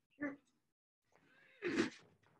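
A person's short wordless vocal sounds: a brief one just after the start and a louder one near the end whose pitch rises and falls, heard over the handling of books.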